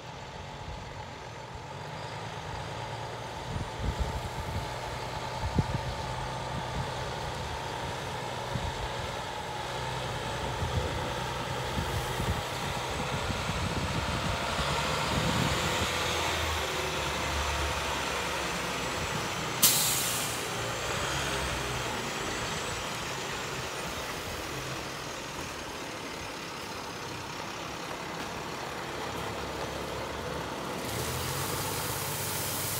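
Diesel engine of an International 7400 6x6 water truck running as the truck drives up and passes close by, louder as it nears. About two-thirds of the way through comes one short, sharp air-brake hiss.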